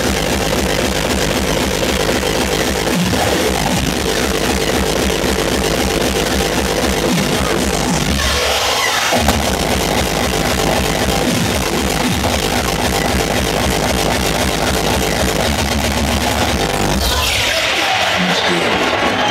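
Hardcore electronic dance music played loud over a club sound system during a live DJ set, with a pounding kick-drum bass line under dense distorted synths. The bass drops out for about a second midway through and a sweep builds near the end.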